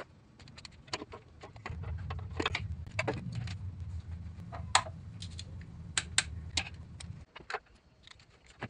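Metal clinks and irregular clicks of a socket and ratchet on a steel bolt as the crankwalk bolt is run in, over a low rumble of handling.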